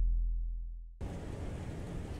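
The low rumbling tail of an intro whoosh sound effect fades out. About a second in, it cuts suddenly to steady outdoor noise of wind over open water.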